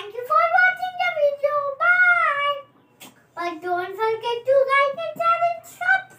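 A young child singing a short tune in a high voice, in two phrases with a brief pause a little after halfway.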